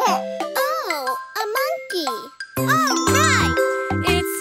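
A cartoon toddler's voice making playful monkey-imitation calls that rise and fall in pitch. Bright children's music with a bouncing bass comes in after about two and a half seconds.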